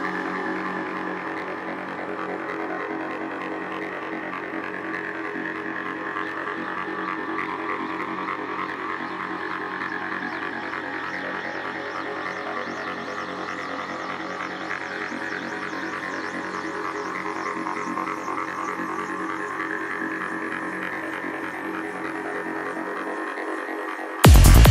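Beatless intro of a psytrance track: a sustained, droning synth with steady low and mid tones, under high sweeps that rise and fall over and over. The bass drops out about a second before the end.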